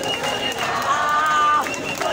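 A marching crowd of young protesters shouting and chanting, with a loud held call in the middle. A steady high tone sounds over the crowd, stopping a little after the start and returning near the end.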